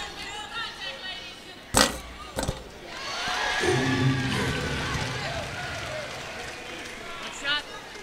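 Arena sound at a college basketball game: two sharp knocks less than a second apart, then a swell of crowd noise mixed with music for several seconds.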